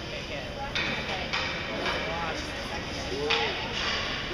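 Ice rink ambience: indistinct, echoing voices of children and spectators under a steady hiss, broken by several short scraping hisses.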